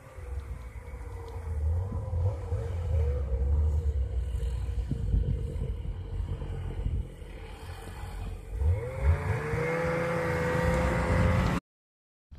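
Snowmobile engine approaching across open snow. Its whine wavers at first, then climbs in pitch and grows louder over the last few seconds, over a steady low rumble. The sound cuts off abruptly near the end.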